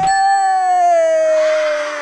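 An edited-in sound effect: one long, loud bell-like tone that starts abruptly and slides slowly down in pitch.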